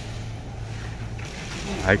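Steady low hum and background noise of a warehouse store's freezer aisle, with a hissier mechanical rattle coming in about a second in.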